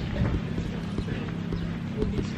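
Footsteps of a person walking on pavement, about two to three a second, mixed with handling knocks on a handheld camera, over a steady low hum.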